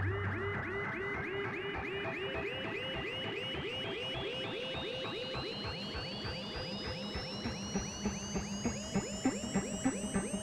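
Live electronic music from hardware analog synthesizers with reverb and delay: rapid sequenced notes, several a second, each a quick chirping pitch drop, over a thin tone that slowly rises in pitch. A low bass note fades out about a second in, and a steadier bass note with stronger pulses comes in near the end.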